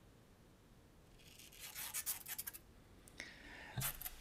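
Black mourning ribbons being torn by hand: a scratchy, rasping tear of fabric starting about a second in and lasting about a second and a half, with a fainter rustle near the end.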